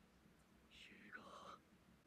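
Near silence, with one faint, brief voice about a second in.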